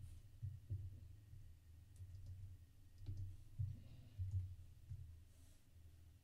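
Faint computer keyboard typing: irregular, dull keystroke knocks with a few light clicks.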